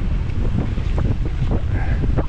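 Wind rushing over the microphone with the rumble of a mountain bike's tyres on a dirt trail at speed, and frequent short knocks and rattles as the bike rides over bumps.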